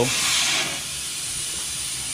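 Air hissing out of a Hoosier dirt late model racing tire as it is deflated, loudest for about the first half-second, then settling into a steadier, quieter hiss.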